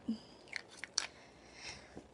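Faint clicks and taps of small objects being handled close to the microphone, four in quick succession in the first second, then a soft rustle.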